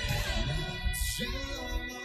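A song playing, with a high woman's voice singing a line in Ukrainian over instrumental accompaniment.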